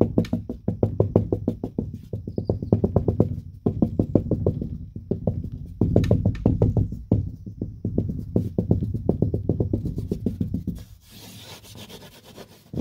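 Fingertips tapping quickly on a painted sheetrock (drywall) wall, dull hollow knocks about eight to ten a second in runs with short pauses. The tapping turns much quieter near the end.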